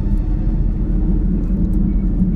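A loud, steady low rumbling drone with no distinct events: dark ambient sound design under a horror scene.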